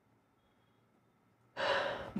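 Near silence for about a second and a half, then near the end a man's breath and voice start up as he resumes speaking.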